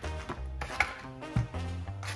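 Plastic vacuum-pack wrapper handled as a slab of smoked bacon is pulled out, with two short knocks as it is set down on a wooden cutting board, over soft background music with steady low notes.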